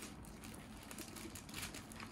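Faint rustling and crinkling of a thin plastic carrier bag being handled and unfolded, a scatter of soft crackles with a slightly louder rustle late on.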